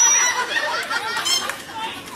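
Several people talking and exclaiming at once, with a brief high-pitched tone right at the start.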